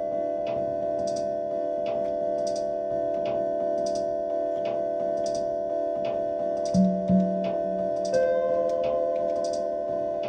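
Live electronic jam on a modular synth and drum machine, in a scale loosely based on Balinese pelog. A drone of several held tones runs under a steady ticking pulse of about two clicks a second and a brighter hiss-like hit about once a second. Two low pitched hits sound about seven seconds in, and a new higher held note enters about a second later.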